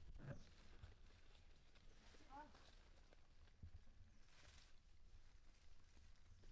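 Near silence: faint outdoor background with one brief, faint, high wavering squeak about two seconds in, the cry of a baby macaque.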